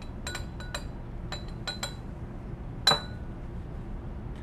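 Glass burette clinking against a glass beaker as it is rinsed: a run of light clinks in the first two seconds, then one louder clink with a short ring about three seconds in.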